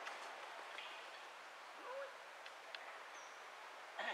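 A single short animal call, rising then levelling off, about two seconds in, over a steady forest hiss, with a few faint clicks later.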